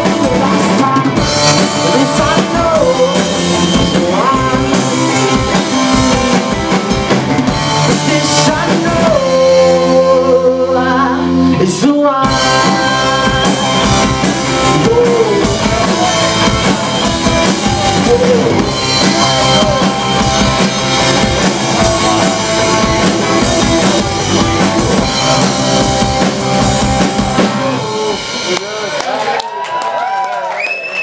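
Live rock band playing an instrumental passage on drum kit, electric guitars and bass. About ten seconds in the drums drop out under a held chord for a couple of seconds, then the full band comes back in together; near the end the music starts to wind down.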